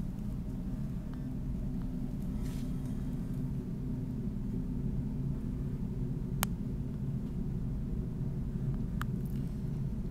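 A steady low hum and rumble, with one sharp click about six and a half seconds in and a fainter click near nine seconds.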